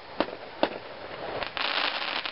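Victory Fireworks aerial shells bursting in the air: two sharp reports in the first second, then a dense burst of rapid crackling near the end.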